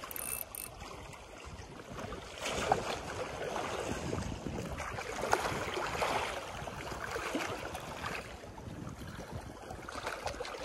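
Small sea waves washing and lapping against shoreline rocks, swelling and fading in irregular surges.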